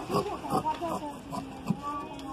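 Large tailor's shears cutting through cloth, with a few sharp snips, under a voice speaking indistinctly.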